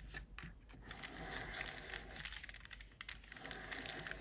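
A crumpled paper tissue rubbing and crinkling against paper as stray glue is wiped off; faint rustling with a few light clicks, most continuous through the middle.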